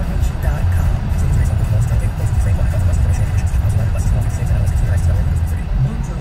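Steady low road and engine rumble inside a moving car's cabin at highway speed, with a car radio playing music and voices over it.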